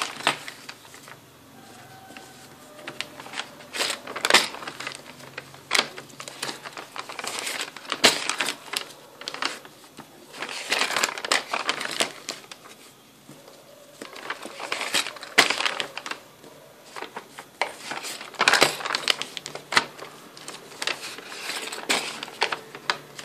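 Paper of a handmade gift bag being folded back and forth by hand into fan pleats: repeated rustling and crisp creasing in bursts every few seconds as each fold is made and pressed.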